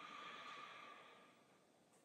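Near silence, with a faint breathy exhale in roughly the first second.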